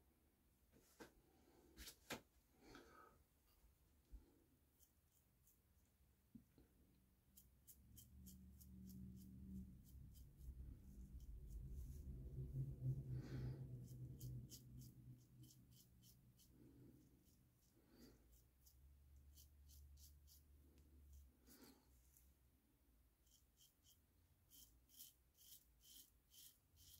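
Faint, scratchy strokes of a double-edge safety razor cutting through lathered beard stubble, coming in short runs with pauses between them: the audible 'feedback' of the blade on the whiskers. A soft low rumble rises and falls in the middle.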